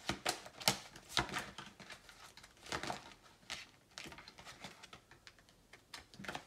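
A tarot deck being shuffled and handled by hand: a quick run of sharp card clicks and slaps in the first second or so, then scattered taps and flicks.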